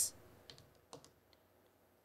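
A few faint, short clicks, about three in a second, against quiet room tone.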